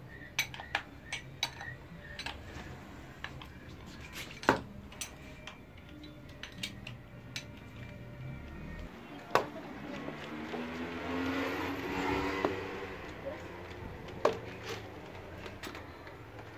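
Sharp metallic clicks and clinks of a 19 mm wrench against the steel top cap of a Suzuki GSR 600 front fork tube as the cap is worked loose. There are several quick clicks near the start and single ones scattered later. A droning sound swells and fades in the middle.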